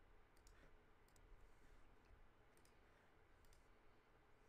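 Near silence, with a few faint computer mouse clicks, some in quick pairs, as items in a dropdown menu are pointed at and chosen.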